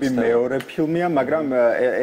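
Speech only: a person talking continuously in conversation.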